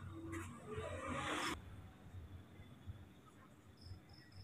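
Faint rustling and handling noise from a hand moving over the phone's microphone for about a second and a half, then near silence.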